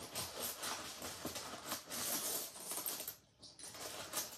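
Faint light clicking and rustling of small objects being handled, dropping almost to quiet about three seconds in.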